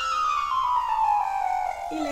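A whistle-like tone slides slowly down in pitch over about two seconds, like a falling sound effect, over background music; steady piano-like notes come in near the end.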